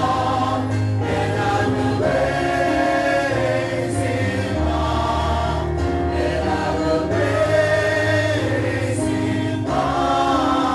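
A church choir singing a hymn in long, held phrases over steady low notes.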